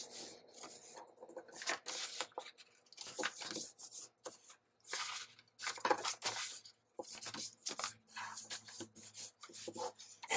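Small sheets of coloured paper being folded and creased by hand, rustling and rubbing in short bursts with brief pauses between.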